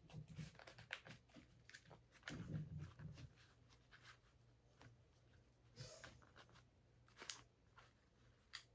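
Near silence, with faint scattered clicks and rustles from a plastic fashion doll being handled and dressed.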